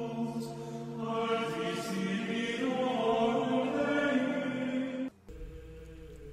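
Soft, slow sacred choral chant with long held notes. It breaks off suddenly about five seconds in, leaving a faint steady tone.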